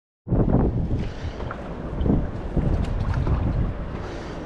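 Wind rumbling on the microphone, with the splash and drip of a paddle dipping into calm canal water in swells every second or so.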